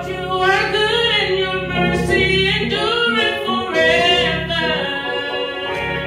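A woman singing a slow gospel solo with long, held notes, over sustained church keyboard chords.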